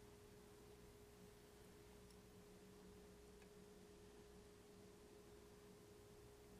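Near silence: room tone with a faint, steady hum at a single pitch.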